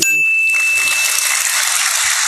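An audience applauding. A thin, steady high tone rings for just over a second as the applause begins.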